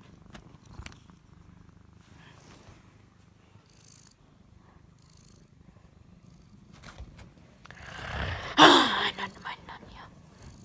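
Domestic cat purring steadily while being stroked, with a brief louder sound about eight and a half seconds in.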